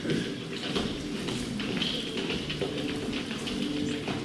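Footsteps of several performers walking across a wooden stage in sandals: a scattered patter of taps and shuffles.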